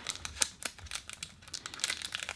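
Cardboard box and paper pack of Kodak ZINK photo paper handled in the hands, the inner pack slid out of its box: a string of small irregular clicks and rustles.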